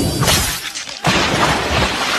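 Movie sound-effect explosion: a brief rush of noise, a short dip, then about a second in a sudden loud crash that carries on as a noisy rumble of fire and debris.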